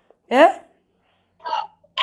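A short, sharp vocal exclamation ("ya") whose pitch slides steeply upward, followed about a second later by a brief, quieter vocal sound.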